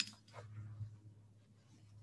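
Quiet room with a low steady hum, a small click at the start and a few faint soft rustles as a calligraphy brush is worked in an ink dish and against a paper towel.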